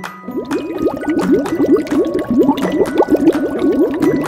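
Cartoon bubbling sound effect: a rapid run of short rising bloops that starts just after the beginning. It plays over light background music with chime-like notes.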